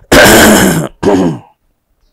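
A man clearing his throat: a loud, rough burst of just under a second, then a shorter voiced one that falls in pitch.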